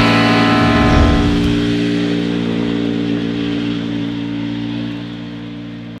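Closing rock music: a distorted electric guitar chord held and fading out.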